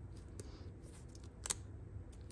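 Faint handling of a roll of glue dots and a ribbon bow, fingers working the backing strip to get a dot to stick, with a few small clicks, the sharpest about one and a half seconds in.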